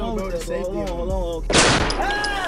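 A person's voice calls out, then about one and a half seconds in a single loud gunshot bursts out for about half a second.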